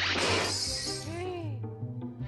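Background music with a loud crash of noise, which starts just before and fades away over about a second and a half.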